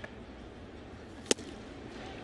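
One sharp leather pop about a second and a half in: a 99 mph fastball smacking into the catcher's mitt.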